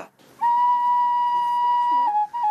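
Background music beginning: a flute holding one long, steady note that starts about half a second in.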